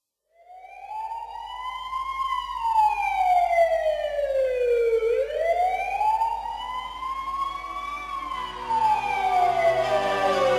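A wailing siren, rising and falling slowly in two long sweeps of about three seconds up and three seconds down. Near the end, music with low steady notes comes in under it.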